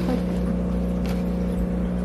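Steady low electrical hum of running aquarium equipment, holding one even pitch.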